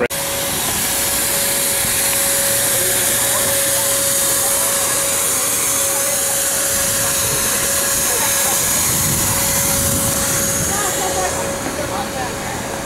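Loud steady hiss, like rushing air, with one steady high tone running through it; it starts abruptly and the tone stops near the end.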